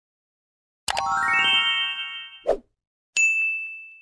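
Subscribe-button animation sound effects: two quick clicks set off a rising run of chiming tones that ends in a short pop, then a single bright notification-bell ding rings out and fades.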